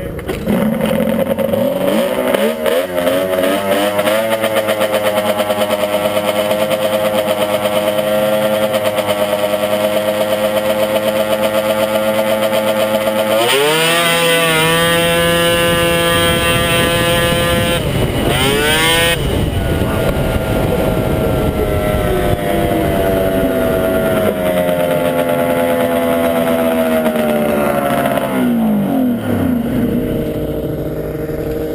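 Two-stroke 700 twin engine of a Ski-Doo Mach 1 prostock drag snowmobile. It revs up and holds a steady pitch while staged. About 14 seconds in it launches with a sudden jump in revs and rush of noise, and pulls hard for about five seconds. The throttle comes off sharply, and the revs fall away slowly as the sled coasts down.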